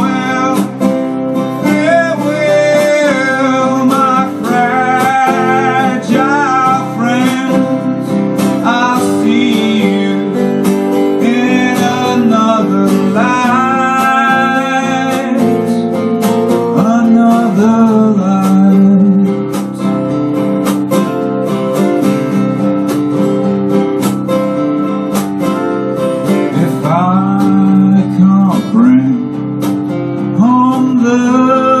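Two acoustic guitars played live, with a man singing over them.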